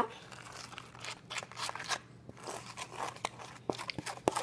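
A spoon stirring and scraping in a flimsy paper bowl of melted sugar, with irregular light scrapes, clicks and paper crinkles.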